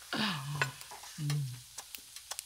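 Two short wordless vocal sounds, each falling in pitch, the first with a breathy hiss, amid small sharp clicks at a meal table.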